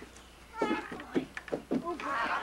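A child's high-pitched voice: several short calls or squeals in quick succession, starting about half a second in.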